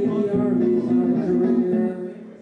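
Layered looped guitar music from a loop station, steady sustained notes that cut off suddenly near the end as the loop is stopped.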